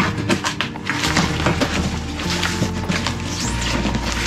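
A cardboard shipping box being torn open, with a run of short cracks and rips from the packing tape and cardboard, over background music.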